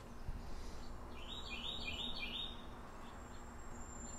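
A songbird singing faintly: a quick run of about five short, high chirps starting about a second in, over a steady faint background hiss.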